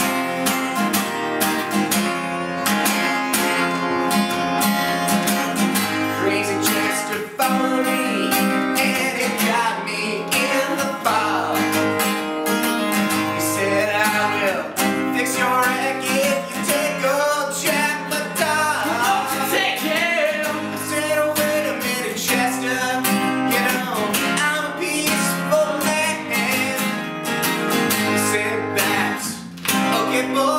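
Acoustic guitar strummed in a steady rhythm with a man singing lead, a live unamplified performance of a rock song.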